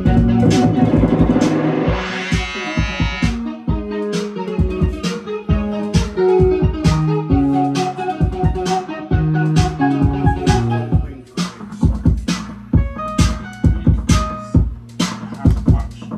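Electronic synth music from a hardware jam sequenced on an Elektron Octatrack sampler: a steady drum-machine beat with a synth bass line and held synth notes. A bright synth sweep comes in about two seconds in.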